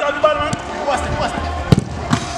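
A football being kicked on artificial turf: a light strike about half a second in, then a sharp, loud strike near the end, with players shouting.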